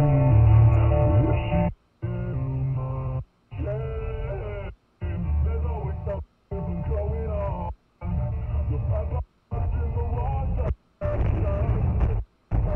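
A song playing on a car's stereo, picked up by the dash camera inside the car. It sounds muffled, with the top end cut off, and is broken by short silent gaps about every second and a half.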